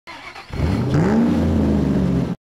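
Car engine sound effect revving: a quieter start, then about half a second in the engine note climbs in pitch around the one-second mark and holds steady.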